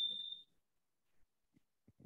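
A man's voice trails off with a thin steady high tone under it, both cutting off about half a second in; then near silence with a few faint short ticks.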